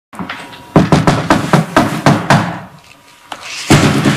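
A series of about eight quick, sharp knocks in irregular succession, stopping after about two seconds.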